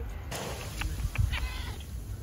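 A cat giving a few short, faint meows over a low rumble.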